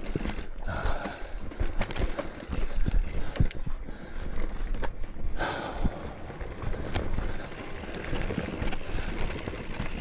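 Nukeproof Mega mountain bike descending a rough forest dirt trail: tyres rolling over dirt and roots, with a steady run of knocks and rattles from the bike over the bumps.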